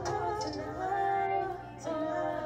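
A woman singing live into a handheld microphone over backing music, holding notes and sliding between them.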